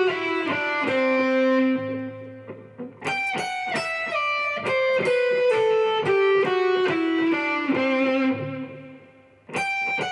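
Stratocaster electric guitar playing a fast descending solo phrase of bends, slides and pull-offs, twice: the first run ends on a low note that rings out about two seconds in, the second starts about three seconds in and rings out near the end, and the phrase starts again just before the end.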